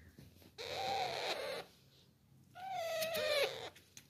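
Young Alexandrine parrots calling: two drawn-out calls about a second each, the second one bending down in pitch near its end.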